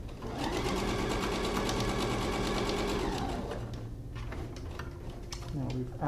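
Domestic electric sewing machine stitching at a steady speed, a long basting stitch, as its fast even chatter runs for about three seconds, then slows and stops.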